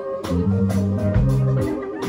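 Live reggae band playing: electric guitar over a bass line and drum kit.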